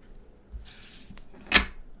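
Tarot cards being handled: a soft sliding rustle as a card is drawn from the deck, then a single sharp tap about a second and a half in.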